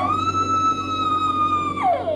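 Dog howling: one long, high, steady note that drops in pitch near the end and goes on as a wavering lower howl.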